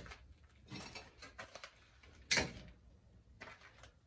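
Light knocks and scrapes of handling on a brick stove surround as a spirit level is set on the top course of bricks, with one sharper knock a little past two seconds in.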